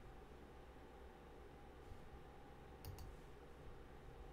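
Near silence: room tone with a low hum, broken by two quick faint clicks close together a little under three seconds in.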